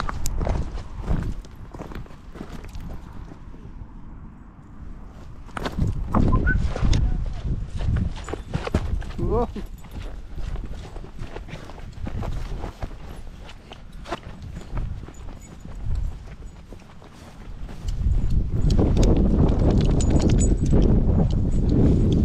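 Walking outdoors with dogs: footsteps and paws on grass and irregular thuds, with wind buffeting the microphone, heaviest in the last few seconds. A couple of short rising squeaks come about six and nine seconds in.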